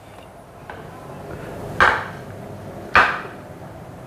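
Two sharp knocks with a brief ring, about a second apart, over faint steady background noise.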